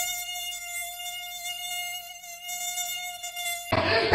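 Mosquito buzzing sound effect: one steady high-pitched whine that cuts off shortly before the end, where louder noise takes over.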